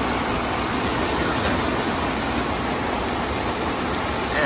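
Heavy rain pouring down, a steady, unbroken hiss.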